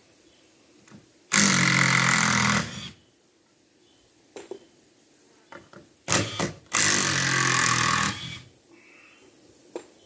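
A handheld power drill/driver running in two bursts of about a second and a half, driving screws to fasten a wooden board to a beam, with a quick blip of the trigger just before the second.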